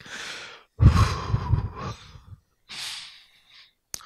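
A man breathing forcefully close to a handheld microphone, demonstrating paired exhales for deep breathing: a short breath, then a long, loud 'hoo' exhale about a second in, then a softer breath near the end.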